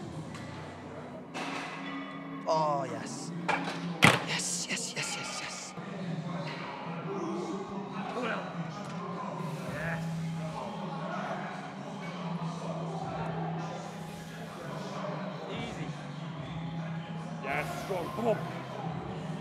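Gym ambience of background music and indistinct voices, with a few clanks and one sharp thud of gym equipment about four seconds in.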